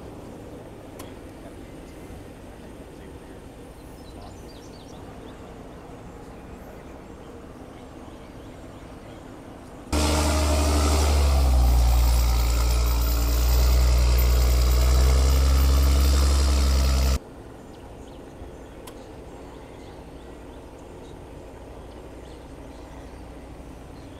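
Diesel engine of a medium-duty flatbed tow truck running close by, a loud, steady, deep engine sound lasting about seven seconds in the middle, starting and stopping abruptly. Before and after it there is only faint outdoor background.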